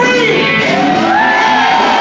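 Live blues band playing, with a woman singing a long, belted note that rises at the start and then holds.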